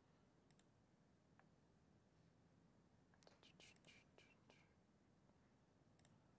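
Near silence: room tone, with a few faint clicks and a faint breathy hiss a little after the middle.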